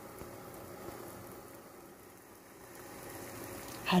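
Eggs frying sunny-side up in a pan: a soft, steady sizzle.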